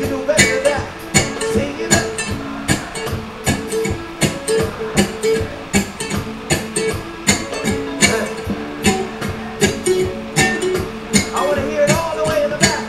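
Electric cigar box ukulele strummed in a steady reggae rhythm, with chords struck a few times a second over held notes.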